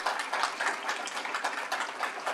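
Audience applauding: many hands clapping at once, steady throughout.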